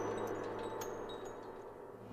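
Studio logo sound: short high chime-like glints over a low held tone, fading away.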